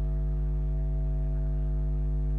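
Steady low electrical hum with a buzzy edge, the mains hum of the recording setup, unchanging throughout.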